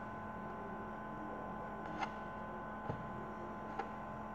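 Steady electrical mains hum, with three faint clicks: about two seconds in, about three seconds in, and near the end.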